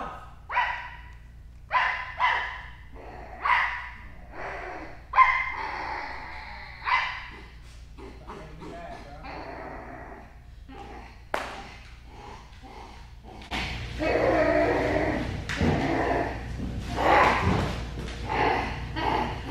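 A woman imitating a dog, giving short barks about a second apart, then going quieter. A louder, rougher stretch of sound follows near the end.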